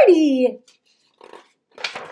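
A woman's voice drawn out and sliding down in pitch for about half a second, the tail of an exaggerated character exclamation. Then near quiet, with a brief soft rustle near the end as a picture-book page is turned.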